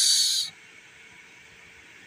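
A man's drawn-out "s" hiss at the end of a spoken word, cutting off suddenly about half a second in, followed by faint steady background hiss.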